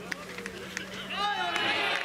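Several voices of players and spectators shouting during a live batted-ball play, swelling into a louder burst of overlapping yells about a second in.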